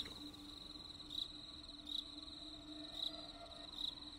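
Faint, steady, high-pitched insect trill with a brief louder pulse about once a second, over a faint low hum.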